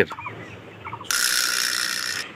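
Vault-door opening sound effect: a bright, hissing mechanical ratchet-and-gear clatter that starts about a second in and lasts just over a second.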